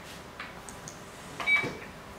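A Go stone snapped down onto a wooden board with a sharp click about one and a half seconds in, a short high ring on it, with a few lighter clicks before it.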